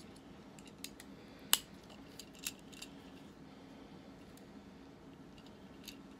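Hard plastic parts of a small Transformers Cyberverse Optimus Prime action figure clicking and snapping as it is transformed by hand: a few short, scattered clicks, the sharpest about a second and a half in, over a faint steady hum.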